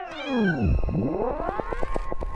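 Electronic sound effect for an animated logo: several pitched tones glide down together, then sweep back up over a fast run of ticks, about ten a second, in a cartoonish, cat-like way.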